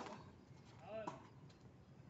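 A tennis ball struck by a racket right at the start, a sharp single pop. About a second in comes a short shout, then a couple of faint knocks of the ball further off.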